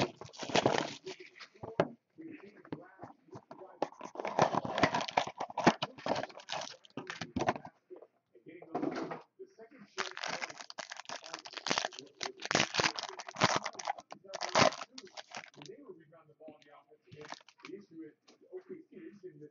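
Plastic shrink wrap and a foil card pack being torn and crinkled as a sealed Topps Supreme football card box is opened, in several separate bursts of ripping and rustling with quieter handling between.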